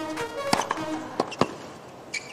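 Background music with steady tones, with three sharp racket-on-ball hits of a tennis rally cutting through it: one about half a second in and two close together a little past the middle.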